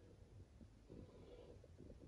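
Near silence: faint room tone with a few very faint ticks.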